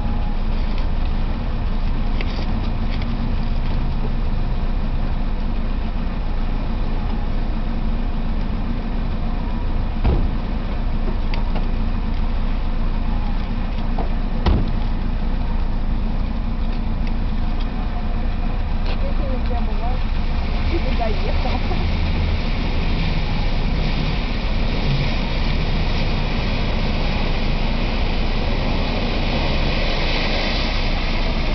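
Nissan X-Trail SUV engine running as it drives through a shallow stream: a steady low drone that grows louder and brighter over the last third as the car approaches. Two sharp knocks come about ten and fourteen seconds in.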